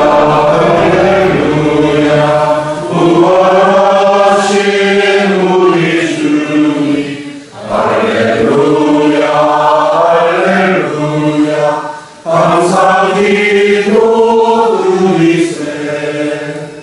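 A congregation singing together at Mass, in long sustained phrases with two short breaks for breath.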